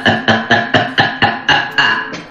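A man laughing in rapid, even pulses, about four a second.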